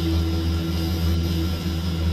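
Electronic synthesizer drone: a steady low hum with a held, higher steady tone layered above it.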